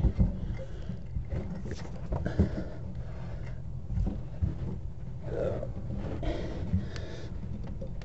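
Brass air fittings and a pressure gauge being handled and screwed together, with scattered small metal clicks and taps over a steady low rumble. A man grunts and breathes hard with the effort a couple of times.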